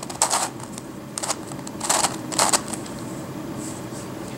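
Plastic layers of a Crazy Radiolarian twisty puzzle clicking and clacking as its faces are turned by hand, in about five short bursts, the loudest two in the middle.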